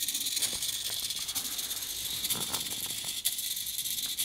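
Steady hiss with a few faint, short rattles and clicks from a small hobby servo moving the 3D-printed plastic carriage plate up and down.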